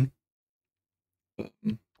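Near silence, then two short, low voice sounds from a man near the end.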